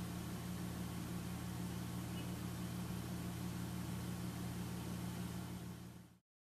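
A steady low hum with a faint hiss under it, fading away near the end.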